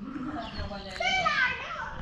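A child's high voice calling out in the background, one short call about a second in that slides down in pitch.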